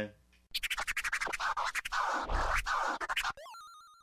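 A short hip-hop transition sting: record scratching over a beat for about three seconds, then a brief stair-stepped electronic bleep near the end.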